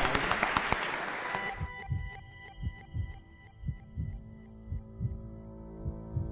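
Audience applause that cuts off abruptly about a second and a half in, followed by ambient outro music: steady held tones over a low, heartbeat-like thumping pulse about once a second.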